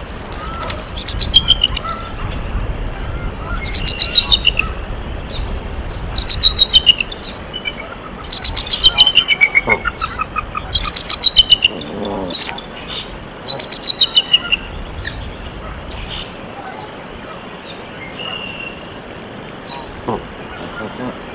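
A bird calling close by in about six short, rapid trills. Each trill is a quick run of high notes falling slightly in pitch, with pauses between them. A low rumble runs underneath for the first half.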